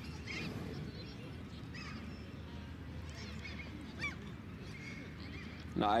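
Outdoor background ambience: a steady low rumble with faint, short high-pitched calls now and then. A man's voice starts speaking just before the end.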